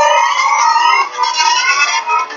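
Siren-like electronic tones wavering up and down in pitch, several overlapping, from the cartoon's soundtrack during a robot battle; thin, with almost no low end.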